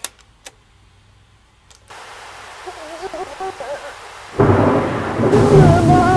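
Playback of a noisy voice-recorder recording. After a few faint clicks, a hissing noise rises about two seconds in with a faint wavering voice in it, then jumps much louder just past four seconds into a rough, rumbling roar with a sobbing voice barely audible through it.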